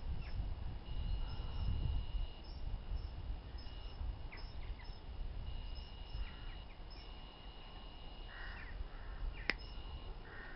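Outdoor field ambience: a low rumble of wind on the microphone, with a thin high tone coming and going. A couple of short, harsh bird calls come near the end, and a single sharp click comes just before it.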